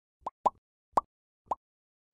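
Four short cartoon pop sound effects, each a quick upward blip, in quick succession over about a second and a half, as the icons of a like-and-subscribe end-screen animation pop up.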